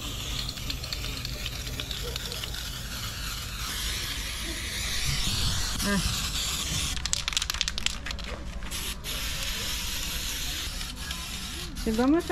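Aerosol can of antifouling paint spraying with a steady hiss onto a saildrive leg and propeller, with a few short ticks partway through.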